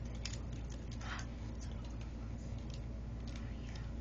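Low steady room hum with a few faint, soft clicks and rustles.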